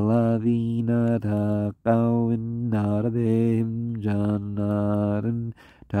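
A man's voice reciting the Quran in Arabic as a slow melodic chant, holding long level notes in phrases, with short pauses about two seconds in and near the end.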